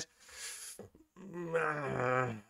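A man's breath, then a long drawn-out hesitation sound, a low 'ehh' with a slightly falling pitch, starting about a second in.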